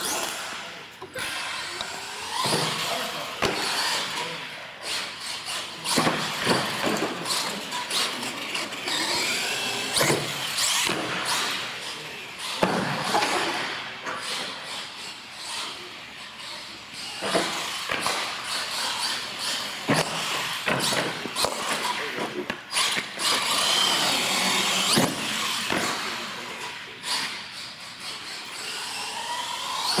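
Radio-controlled monster truck doing a freestyle run on a concrete floor: its motor whines, rising and falling in pitch with the throttle, broken by repeated sharp knocks as it hits ramps, lands jumps and crashes.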